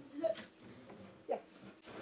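Mostly quiet room, broken by brief, soft speech: a short vocal sound near the start and a single spoken "Yes?" about a second in.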